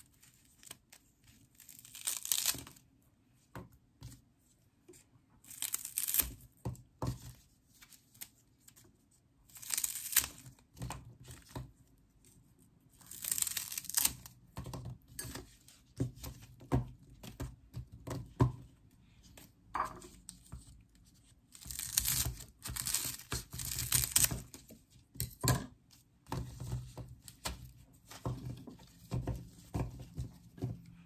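Kitchen scissors cutting through fibrous lemongrass stalks, with short snips at irregular intervals and quieter rustling of the stalks being handled between them.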